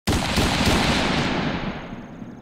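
Intro sound effect for a channel logo: a loud, noisy crackling burst with a low rumble that hits suddenly and fades away over about two seconds, the hiss dying out before the rumble.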